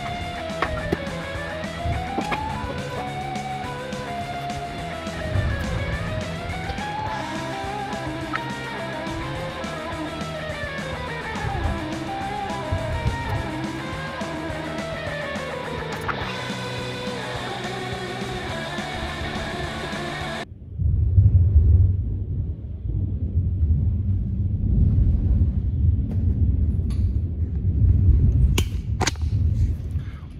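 Background rock music with guitar for the first two-thirds, then a sudden cut to a loud, low, rolling rumble of thunder that rises and falls until the end.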